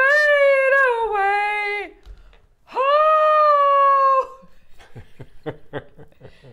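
A woman singing unaccompanied with two long held notes. The first, on the word 'away', wavers and slides down over about two seconds. The second is held steady for about a second and a half, and laughter follows.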